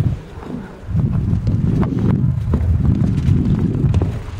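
Wind buffeting the microphone of a handheld camera: a loud, uneven low rumble that eases briefly near the start and then holds. A few faint knocks come through in the second half.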